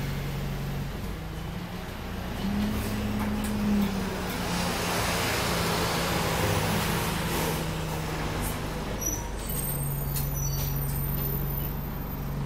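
Alexander Dennis Enviro200 bus's diesel engine running, heard from inside the saloon, its pitch stepping up and down as the bus moves off and changes speed. A hiss comes around the middle, and a run of light ticks with short high beeps comes near the end.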